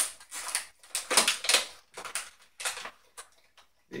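A small plastic toy figure and its packaging handled in the hands: a sharp click at the start, then several short bursts of crinkling and clicking with brief pauses between.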